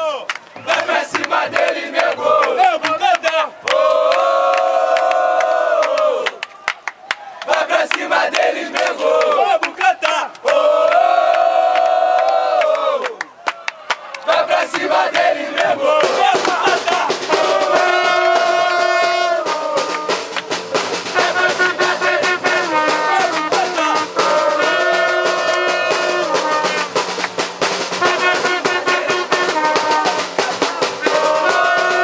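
A crowd of football supporters chanting together in long, drawn-out shouted phrases. About halfway through, a band of bass drums and a trumpet strikes up, keeping a steady beat and a brass tune under the singing.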